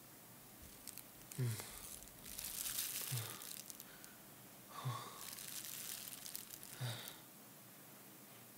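A person's strained, gasping breaths, a short groaning gasp about every two seconds, with crackly plastic rustling between them.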